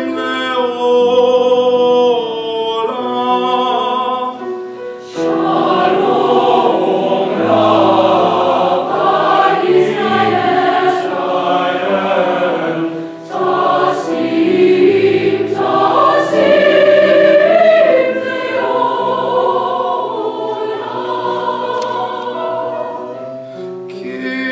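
High school mixed choir singing sustained chords in parts. The sound breaks briefly about five seconds in and swells fuller and louder after it, then dips again near the middle before carrying on.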